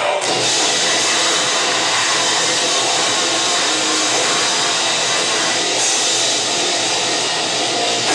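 Grindcore band playing live at full volume: a dense wall of distorted guitar and drums with no clear rhythm or tune showing through. It starts abruptly and stops suddenly right at the end.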